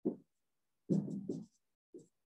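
Dry-erase marker writing on a whiteboard: a short stroke at the start, a run of quick strokes about a second in, and one more near the end.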